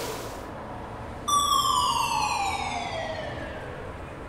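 A high, pitched whine with overtones that starts suddenly about a second in and slides steadily down in pitch for about two and a half seconds, over a hiss that fades in the first moments.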